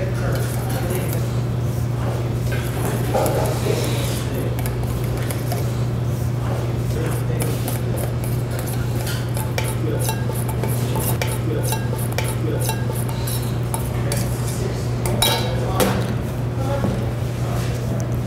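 Silicone spatula scraping and knocking against a stainless steel mixing bowl as egg yolks are beaten into creamed butter and sugar, with irregular metal clinks from a small steel bowl. A steady low hum runs underneath.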